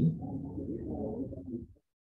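A man's drawn-out, low hum while thinking, a hesitation "hmm" that stops shortly before the end.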